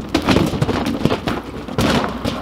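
Inflated rubber balloons being batted back and forth by hand, making a quick irregular series of hollow thuds, with feet scuffing on gravel.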